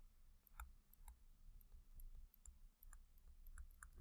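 A dozen or so faint, irregular clicks of a stylus tapping on a tablet screen while an equation is handwritten, over near-silent room tone.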